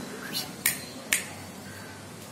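Three sharp clicks in a row: a soft one, then two loud ones about half a second apart.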